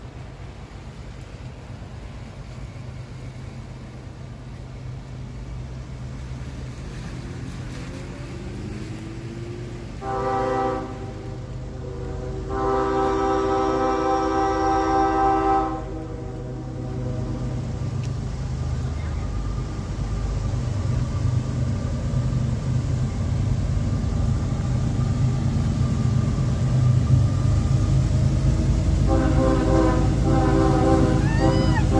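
Approaching CSX diesel freight locomotive sounding its multi-chime air horn: a short blast about ten seconds in, a longer blast a moment later, and another starting near the end. Under it, the low rumble of the diesel engines grows louder as the train draws closer.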